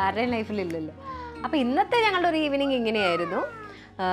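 Long, drawn-out meowing calls that swoop down and back up in pitch, with two calls overlapping about three seconds in.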